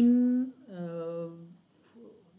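A man's voice holding a drawn-out vowel, then a steady hummed 'mmm' of about a second while he works out the next step, fading to quiet near the end.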